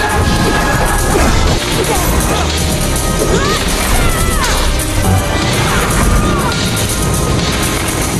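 Edited film battle soundtrack: a dense run of crashing and whacking impacts from close combat, mixed over a musical score.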